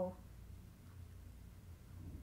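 Quiet room tone with a faint, steady low hum, just after the end of a spoken word.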